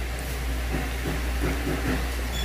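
A steady low hum, with faint, brief murmur-like sounds over it in the second half.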